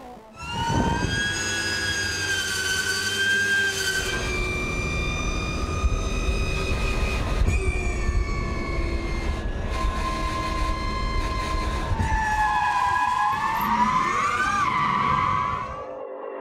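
Electric race car's motors whining at speed over tyre noise: a siren-like stack of steady tones that starts suddenly about half a second in, shifts in pitch a few times, and near the end climbs and then settles.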